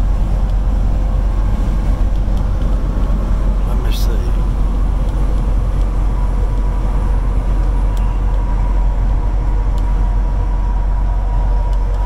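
Road noise from inside a vehicle cruising on a freeway: a steady low rumble of engine and tyres, with a faint steady whine joining it partway through.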